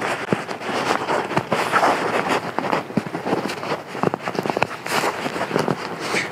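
Rustling and crinkling of a Big Agnes Double Z inflatable sleeping pad's nylon and a quilt strap being handled and clipped on, with many small scattered clicks.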